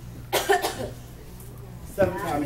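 A short, harsh, cough-like vocal burst about a third of a second in, followed by a low steady hum.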